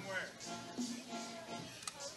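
Faint music and voices in the ballpark background, picked up by the broadcast microphone between the announcer's calls, with one sharp click near the end.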